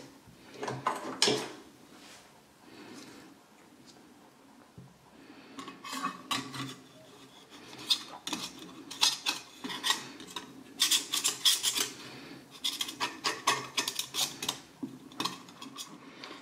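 Hands working a metal heat sink plate: rubbing and scraping as thermal paste is spread over it, with short metallic clinks and clatter from handling the plate and screws. It is sparse for the first few seconds and busiest in the second half.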